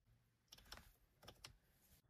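Faint plastic clicks of a Changan UNI-V's wiper control stalk being flicked through its detent positions: a quick run of clicks about half a second in and another about a second and a quarter in.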